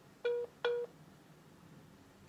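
Smartphone call-ended tone: two short, identical beeps about a third of a second apart, a sign that the call has just dropped.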